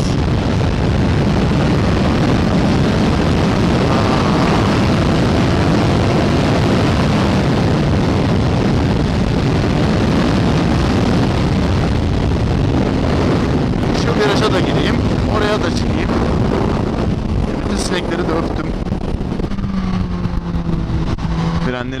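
Suzuki GSX-S1000's inline-four engine running under way at road speed, mixed with heavy wind rush on the microphone. In the last few seconds the wind rush eases as the bike slows in traffic, and a steady engine note comes through.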